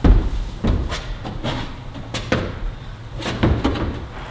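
Several sharp knocks and thuds of a climber's hands and shoes striking the holds and panels of a steep indoor bouldering wall, at irregular intervals, the first the loudest.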